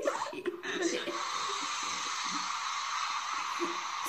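A steady hiss starts about a second in and holds evenly to the end, with faint talk beneath it, heard through a TV's speaker.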